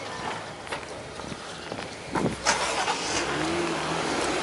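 A car driving by on the street close by, its engine and tyre noise growing louder in the second half.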